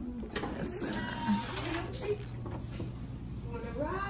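A door latch clicking and a door being pushed open, with a couple of clicks in the first second, against quiet voices and a steady low hum.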